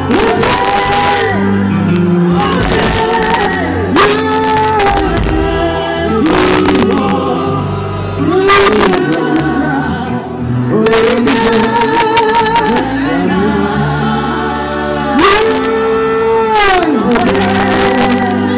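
A woman sings gospel music live into a microphone in long, arching phrases with vibrato, backed by a band whose steady bass notes and regular drum hits run under the voice.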